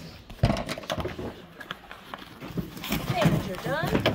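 Irregular knocks and rustles of cardboard shipping boxes and boxed vinyl records being handled, with brief murmured speech near the end.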